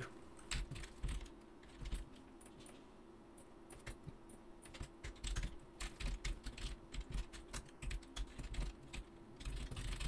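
Typing on a computer keyboard: irregular key clicks, sparse in the first few seconds, then coming in quick runs from about four seconds in.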